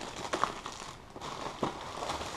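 Plastic packaging crinkling and rustling as a box is worked out of a plastic courier mailer and its black plastic wrapping, with a few sharper crackles along the way.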